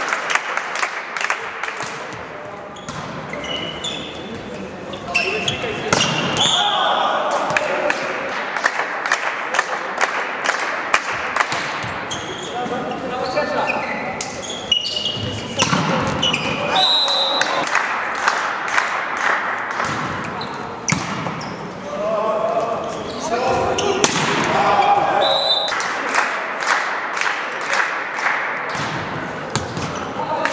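Indoor volleyball game sounds in a large, echoing sports hall: a ball bouncing on the floor and being struck, many sharp hits throughout, with players' voices calling out.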